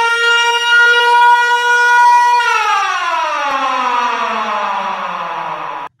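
Emergency vehicle siren holding one steady pitch for about two and a half seconds, then winding down in a long, slow fall in pitch, cut off suddenly just before the end.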